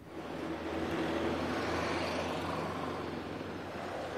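Steady engine rumble with a faint hum, swelling over the first second and easing a little toward the end.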